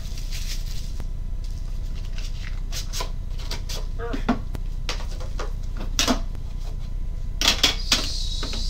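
Plastic shrink wrap crinkling as it is pulled off a cardboard-and-tin trading card box, with scattered rustles and clicks of the box being handled. The loudest are a pair of knocks near the end, over a steady low hum.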